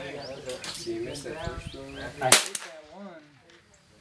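A single loud pistol shot about two seconds in, with a few fainter cracks and muffled voices talking before it.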